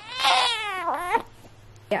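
Newborn baby giving one short cry of about a second, its pitch wavering and then dropping at the end.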